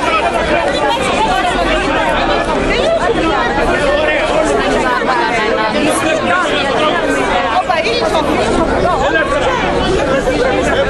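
Crowd chatter close by: many voices talking over one another at once, loud and unbroken.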